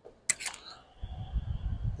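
Handling noise from a hand-held camera being carried past a car's door frame: a sharp click about a quarter second in, then low rumbling from about a second in.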